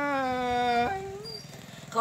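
A woman singing a Tai folk song (hát Thái), holding one long steady note that breaks off about a second in, followed by a short lower note and a brief pause before the next phrase.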